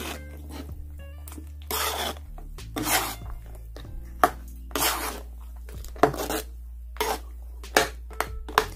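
A spoon stirring red chile sauce in a metal pan, making short scraping and clinking strokes against the pan at irregular intervals.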